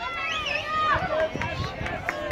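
Several spectators shouting and cheering, high voices overlapping and swooping in pitch, with a few sharp claps or clicks near the end.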